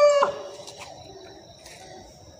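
The end of an animal's long, drawn-out call: one steady pitched cry, falling slightly, that stops about a quarter second in, leaving faint background noise.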